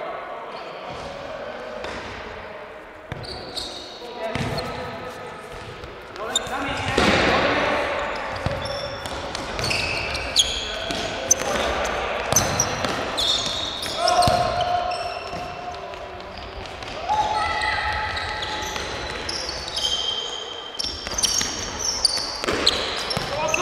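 Futsal ball being kicked and bouncing on a hard indoor court, with sneakers squeaking on the floor, all echoing in a large sports hall; players call out now and then.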